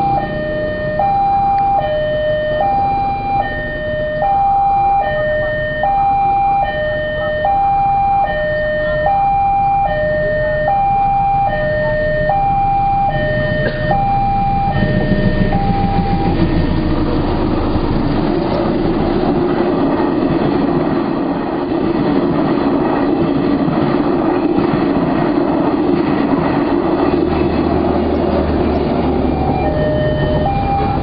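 A railway level-crossing warning alarm sounds an electronic two-tone signal, high and low tones alternating about a second each, until about halfway through. A train then passes with a steady rumble of wheels on rail, and the two-tone alarm starts again right at the end.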